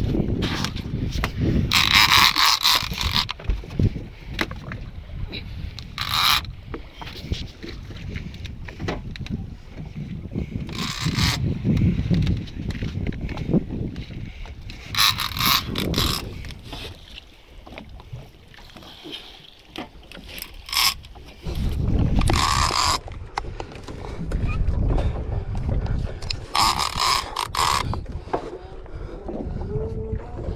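Penn International 30T conventional reel's drag giving out line in short bursts of about a second, several times over, as a hooked tuna pulls against the bent boat rod. A steady low rumble runs underneath.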